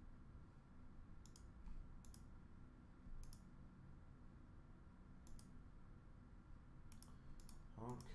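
Near-silent room tone with about seven faint, sharp clicks spaced a second or more apart, two or three bunched together near the end. A man's voice begins just as it ends.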